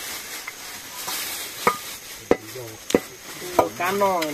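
Dry smoked meat being handled on a bamboo slat rack: a crisp rustling and crackling, with four sharp clicks or snaps spread through the second half.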